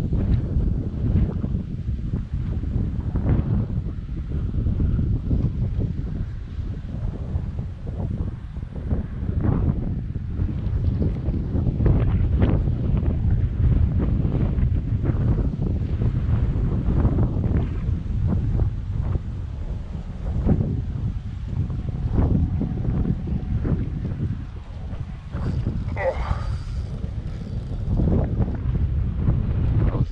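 Wind buffeting the microphone: a steady low rumble with gusty rises and falls.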